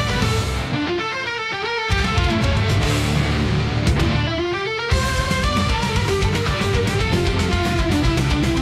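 AI-generated (SUNO) rock instrumental: a lead electric guitar plays melodic runs over bass and drums. The bass and drums drop out twice, about a second in and about four seconds in, leaving the guitar alone for about a second each time, and the full band comes back in on a hit just before the five-second mark.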